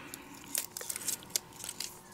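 Faint crinkling and scattered light ticks of paper being handled between the fingers as the backing is picked off a small die-cut paper piece.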